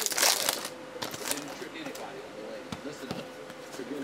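A foil trading-card pack wrapper crinkles loudly for the first half-second or so. Then comes quieter, irregular rustling and light clicking as a stack of football trading cards is slid and flipped through by hand.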